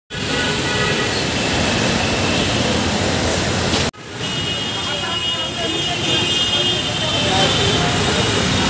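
City traffic noise from a busy road below, with people's voices close by. The sound breaks off for an instant about four seconds in and picks up again.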